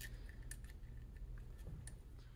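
A few faint, small clicks of fingers working a small torsion spring and the dust cover onto an AR-style rifle's upper receiver, metal and polymer parts lightly ticking together; one click comes at the start and two near the end.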